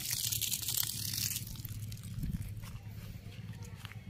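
Irrigation water hissing for about the first second and a half, then stopping abruptly; after that only faint crunches and clicks over a low steady hum.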